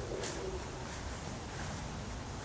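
A low bird call that fades out about half a second in, over steady outdoor background noise.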